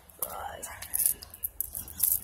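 Soft, unvoiced whispering.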